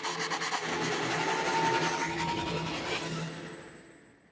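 Logo intro sound effect: a dense scratchy noise over a low steady hum, with a faint rising whistle partway through, fading out near the end.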